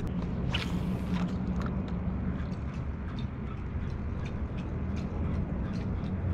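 Fishing rod and reel retrieving a topwater plug: irregular small clicks and ticks from the reel and rod twitches, a brighter cluster in the first second, over a steady low hum.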